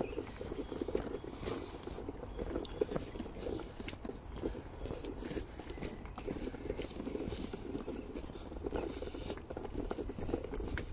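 Footsteps on a wet gravel path, irregular and closely spaced, with a steady low wind rumble on the phone's microphone.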